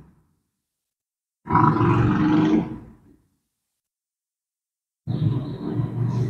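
A woman's voice making two brief murmured, hummed sounds, one about a second and a half in and the other near the end, with dead silence between them.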